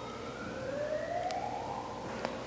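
A faint emergency-vehicle siren wailing, its pitch climbing slowly over more than a second, dropping back and climbing again.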